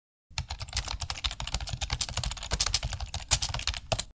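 Rapid keyboard-typing clicks, many keystrokes a second in a fast continuous run, used as a sound effect under an animated title. They stop abruptly right at the end.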